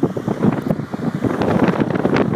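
Wind buffeting the phone's microphone, mixed with dense irregular rustling and knocking handling noise as the camera is carried along at speed.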